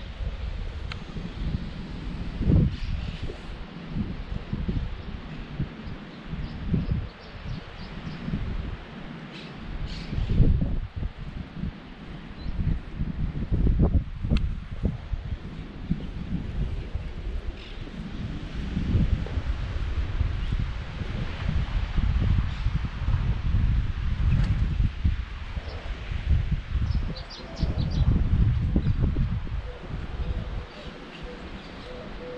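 Wind buffeting an action camera's microphone in irregular gusts, with a few faint bird chirps now and then, most clearly near the end.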